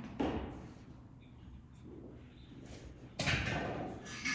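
Exertion and movement sounds of a man doing dumbbell chops while holding a single-leg glute bridge on a turf floor. There is a short noisy burst just after the start and a louder, longer one about three seconds in.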